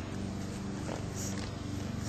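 Boxer puppy growling with a low, continuous rumble while gnawing and tugging at a shoe in play.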